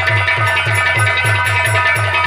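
Live nautanki band music: a drum keeping a fast, even beat of about six low strokes a second under steady held chords.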